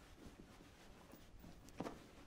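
Near silence with faint rustling of cloth as a folded wool blanket is pulled out of a soldier's knapsack, and one brief louder rustle near the end.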